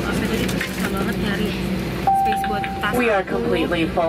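Steady airliner cabin hum. About halfway through, a single steady chime tone sounds for just under a second: the cabin public-address chime. A crew announcement over the PA starts right after it.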